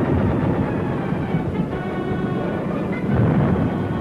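Orchestral film score with held tones over a dense, continuous low rumble of battle noise, gunfire and explosions, swelling about three seconds in.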